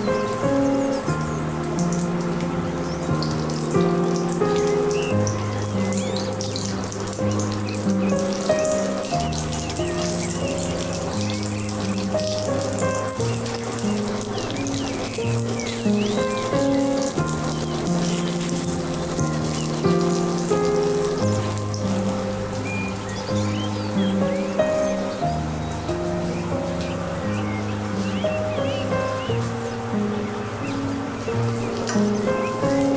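Background music of held notes, with zucchini slices sizzling and crackling in hot oil in a frying pan underneath.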